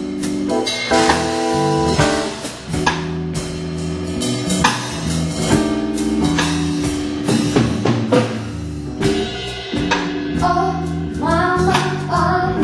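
Live band playing: drum kit with cymbals, electric bass guitar and keyboard holding sustained chords, with a wavering melodic line near the end.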